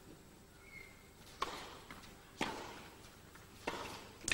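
Tennis ball struck by rackets in a rally: three sharp hits, roughly a second apart, from a serve onward.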